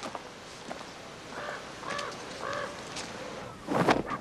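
Outdoor ambience with a bird calling three times, about half a second apart, and a few faint clicks; near the end a short, loud noisy burst.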